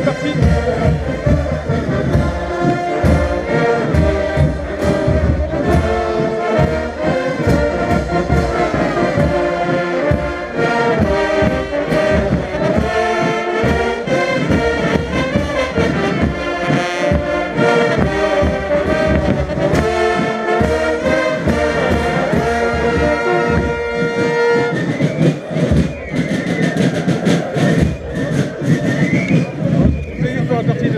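Carnival street band of brass instruments and drums playing a loud marching tune over a regular beat, amid a dense crowd. Near the end the brass drops back and crowd voices come through.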